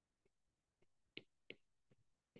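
Faint, sharp clicks of a stylus tip tapping a tablet's glass screen while handwriting, about five at an uneven pace.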